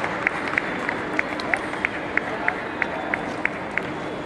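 A table tennis ball bouncing in a steady rhythm, about three sharp clicks a second, the usual bounce of the ball before a serve, over the chatter of a busy sports hall.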